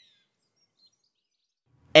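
Near silence with two faint, short bird chirps, one at the start and one just under a second in. A man's voice starts right at the end.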